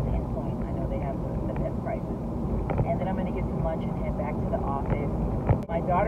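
Steady low road and engine rumble inside a moving car's cabin, with faint indistinct talk over it; the sound briefly cuts out near the end.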